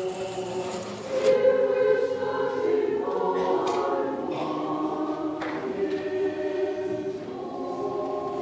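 Russian Orthodox church choir singing a Christmas hymn unaccompanied, in sustained chords that move to a new phrase every second or two.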